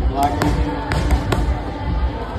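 Boxing gloves smacking against padded focus mitts, a quick run of sharp pad strikes.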